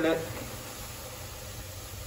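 Faint steady hiss of oil heating in a stainless steel pot as flour is poured in to start a roux, after a single spoken word at the very start.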